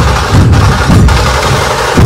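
Dhol-tasha ensemble playing: large dhol barrel drums beaten with sticks give heavy beats about twice a second, under a dense, continuous rattle of tasha drums.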